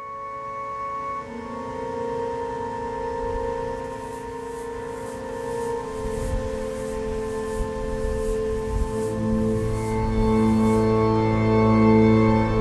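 Organ music playing held chords that change every few seconds, swelling louder and fuller about ten seconds in.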